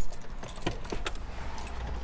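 Keys jingling with a few light, sharp clicks over a low steady hum in a car's cabin, right after a loud thump dies away at the start.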